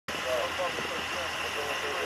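Steady rushing background noise with faint, indistinct voices.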